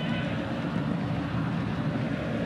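Steady crowd noise from a large football stadium crowd, heard through the match broadcast.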